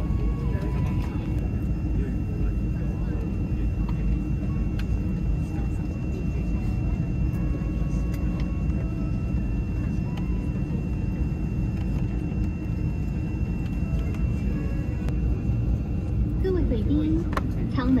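Steady cabin noise inside an ATR 72-600 airliner: a low rumble with a thin, steady high whine above it. Voices start near the end.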